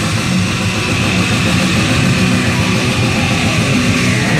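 A live heavy metal band playing loud and without a break: distorted electric guitars, bass guitar and drums.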